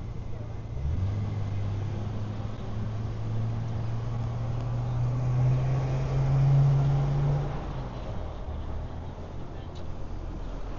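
A motor vehicle's engine hum that comes in about a second in and climbs slowly in pitch, loudest around seven seconds, then drops away, over a steady street background.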